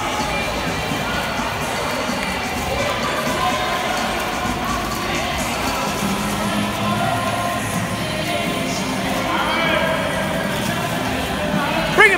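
Indoor swimming pool ambience: a steady wash of water splashing mixed with a hubbub of distant, echoing voices.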